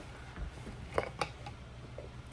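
Quiet handling of a plastic laundry-liquid bottle being lifted up to be smelled, with two short soft clicks about a second in.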